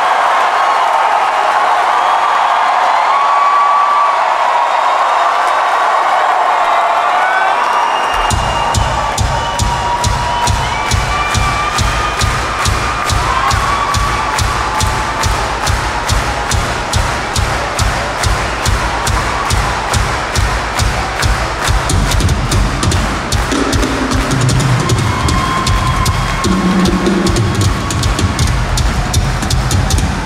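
Rock drum kit solo. The crowd cheers and whistles first, then about eight seconds in a fast, even bass-drum pattern starts, with tom fills rolling over it later while the crowd keeps cheering.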